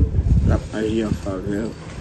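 A man talking in a gravelly voice, with a low rumbling noise and soft knocks underneath.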